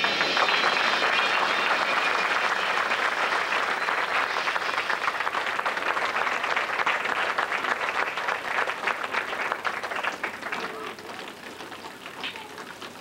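Audience applauding after the music stops. The clapping thins out and fades over the last few seconds.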